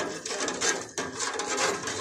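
Metal slotted skimmer stirring salt water in a stainless steel pot, scraping and grating continuously over the pot's bottom as salt is dissolved into brine, with some undissolved salt still left.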